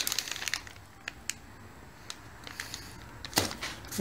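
Plastic packaging crinkling and crackling as a bagged set of sink supply hookups is handled, densest at first and then in scattered crackles, with one louder crackle about three and a half seconds in.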